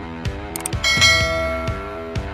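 Upbeat background music with a regular beat. A little under a second in, a bright bell chime sound effect strikes once over it and rings on, slowly fading.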